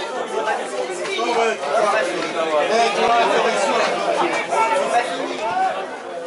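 Many voices talking over one another: chatter of spectators at the ground, with no single voice standing out.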